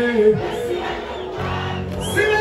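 Voices of a large concert crowd over loud stage music. The music's bass line stops shortly after the start, and new low bass notes come in about a second and a half in.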